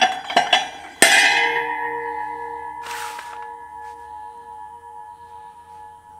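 Steel disc-harrow parts clinking together as a spacer goes onto the gang shaft, then a sharp metal strike about a second in sets the steel parts ringing like a bell, the ring fading slowly over the next few seconds.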